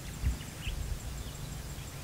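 Quiet outdoor ambience: a low rumbling background with a soft thump about a quarter second in, a faint, evenly pulsing high insect chirp, and a brief faint bird chirp.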